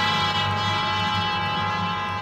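Orchestral music bridge between radio-drama scenes: a held chord, led by brass.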